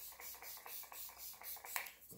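Makeup setting spray misted from a pump bottle onto the face: a run of short, faint hissing sprays.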